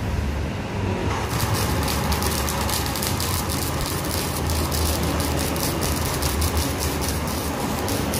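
Flux-core wire welding arc crackling steadily from about a second in. The wire is fed by an improvised drill-driven feeder through a stick (MMA) welder's electrode holder, and a steady motor hum runs underneath.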